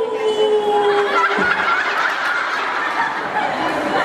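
A man's voice holds one long note into the microphone for about a second and a half, then an audience breaks into laughter that carries on through the rest.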